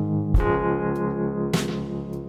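Background music: slow, sustained chords, a new chord struck about a third of a second in and another about one and a half seconds in, each ringing and fading.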